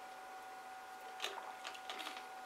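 Faint small clicks of a plastic screw cap being twisted back onto a soda bottle, starting a little over a second in, over a faint steady high hum.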